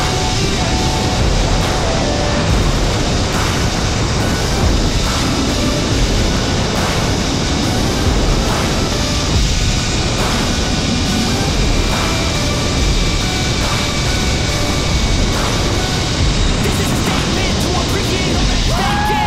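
Wind rushing over the camera microphone on a fast zip-line descent, a loud, steady roar, with a faint steady whine from the trolley running along the cable.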